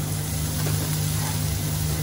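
Prawns and green vegetables sizzling in a hot wok as they are stir-fried, over a steady low hum.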